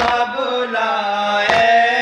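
A group of male voices chanting a Shia mourning noha, joined by a collective matam chest-beat: hands strike chests in unison twice, at the start and about a second and a half in.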